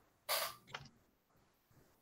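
A brief soft hiss about a third of a second in, with a faint second blip just after, then near silence.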